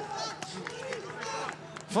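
Pitch-side ambience at a football match: faint shouts from players on the field over a steady low hum.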